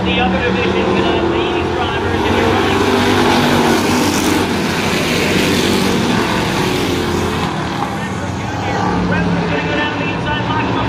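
A pack of street stock race cars running at racing speed around a short oval. The engines and rushing noise swell about four to six seconds in as the cars pass nearest, then ease off again.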